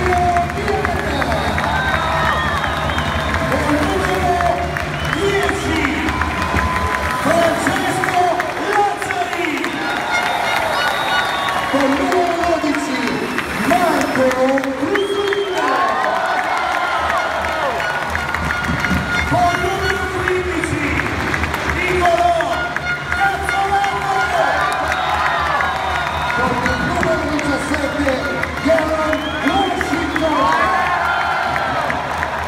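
Arena crowd cheering and applauding over loud PA music with a pulsing bass beat, while an amplified announcer's voice calls out the players' names during the starting-lineup introductions. The bass drops out for several seconds about a quarter of the way in and comes back past the middle.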